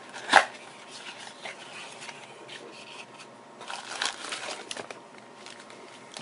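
A small cardboard box being opened by hand: a sharp snap about half a second in, then light sliding and rustling of cardboard and a plastic bag as the contents are pulled out, with a busier rustle around the middle.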